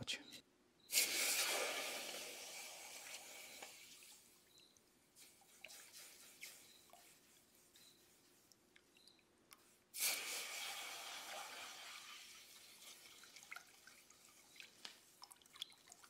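Red-hot rebar steel samples quenched in a bucket of water to harden them, twice: each plunge gives a sudden hiss and sizzle that fades away over about three seconds, the second about nine seconds after the first. Faint drips and ticks come between the two.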